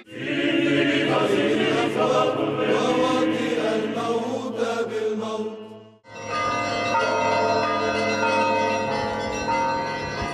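Orthodox liturgical chanting for about six seconds, ending in an abrupt cut. It is followed by music with long sustained tones.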